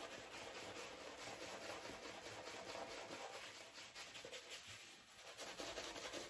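Declaration Grooming B10 shaving brush working lather on a stubbled face: faint, rapid bristly rubbing strokes, easing briefly near the end.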